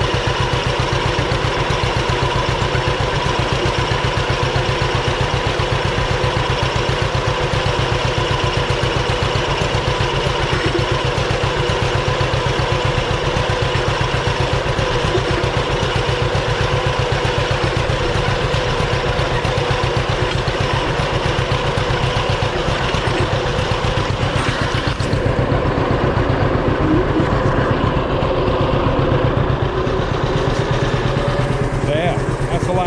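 The two-cylinder engine of a 1943 John Deere Model B tractor running steadily while it pulls a cultivator through the soil, its exhaust firing in an even, rapid popping beat.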